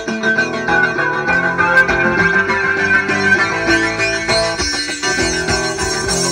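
A live rock band playing loudly: electric guitars over a drum kit.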